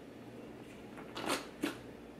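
A pineapple corer being drawn up out of a pineapple, lifting the spiral of cut fruit, with quiet handling sounds. A short exclamation, "Oh!", comes just over a second in, followed at once by a brief sharp noise.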